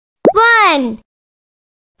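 One short word spoken in a high, sing-song voice, its pitch rising and then falling, with a sharp pop at its start.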